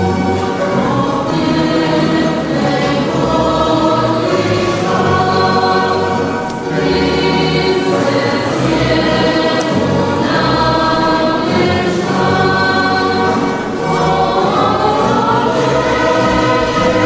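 Choir singing in long held notes, in phrases that change every few seconds.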